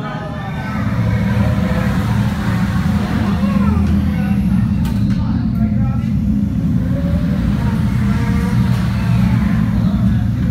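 Steady low rumble of a dark-ride car moving along its track, with voices over it, strongest in the first few seconds.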